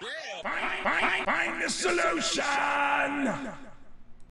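A rapid string of overlapping voice-like calls, each rising and then falling in pitch, fading out near the end.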